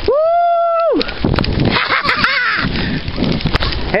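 A child's long, high shout in the first second, then a loud rushing rumble of wind on the microphone while riding along the rough dirt track, with a brief bit of voice in the middle.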